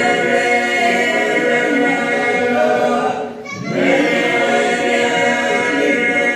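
A mixed group of Albanian folk singers, men and women, singing a cappella together, their voices holding long notes, with a brief break for breath about halfway through.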